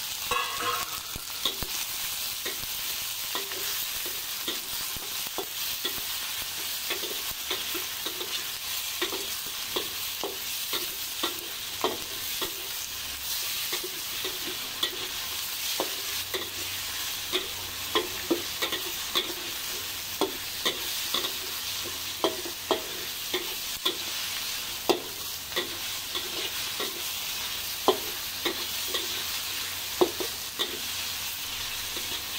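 Tomato, onion and garlic sizzling in a little oil in a stainless-steel wok, with a metal spatula scraping and clinking against the pan in irregular strokes as they are stirred.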